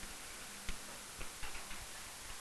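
Faint, scattered ticks and taps of a pen stylus on an interactive whiteboard as a word is being handwritten.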